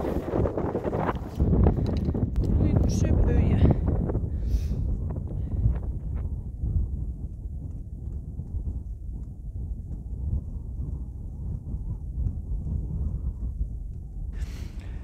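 Wind buffeting the microphone, a low rumble that is louder and mixed with a few knocks of handling in the first four seconds, then settles into a steadier, duller rumble.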